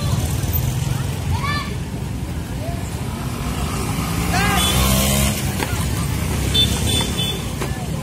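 Motorcycle engines running close by in slow street traffic over a steady low rumble. Two short shouted calls come through, about one and a half and four and a half seconds in.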